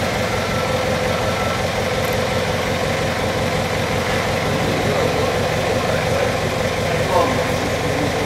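Yale forklift's engine running steadily while it carries a load of seed-potato sacks.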